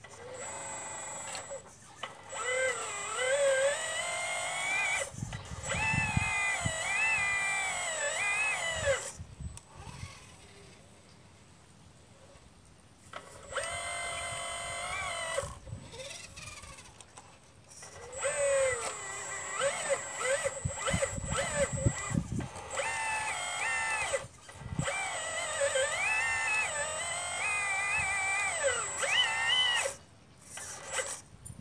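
Hydraulic pump motor of a 1/12-scale RC Liebherr 954 excavator whining in four stretches with short pauses between, its pitch dipping and rising as the arm and bucket work, with a thin high steady tone over it. Low knocks come in during the first and third stretches.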